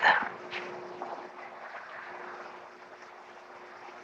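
A quiet pause in an old film soundtrack: faint even hiss with a single low steady tone that fades away about three seconds in.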